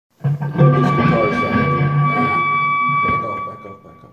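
Handmade cigar box guitar with a piezo pickup, amplified through a Peavey TransFX Pro, playing picked notes with one note ringing on. The playing stops and the sound dies away in the last second.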